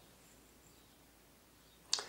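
Near silence: room tone, with a brief breath-like hiss just before the end.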